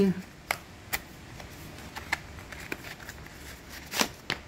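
A small paperboard box being opened by hand and a coiled USB-C cable lifted out: soft rustles and a few light clicks of card, the sharpest click coming right at the end.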